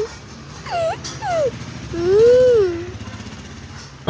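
A young child's whimpering cries: two short falling wails followed by one longer wail that rises and falls, over a steady low hum of motor traffic.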